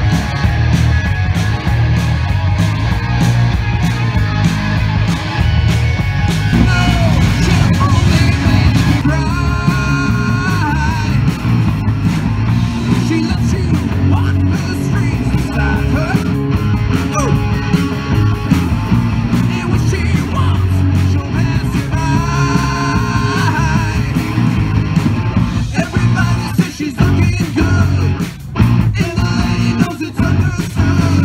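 Live rock band playing an instrumental stretch: electric guitars, bass guitar and drum kit through PA speakers, with a lead line bending in pitch about a third of the way in and again about three quarters of the way in.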